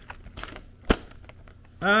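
A folded paper leaflet rustling faintly as it is handled and opened out, with one sharp snap about a second in.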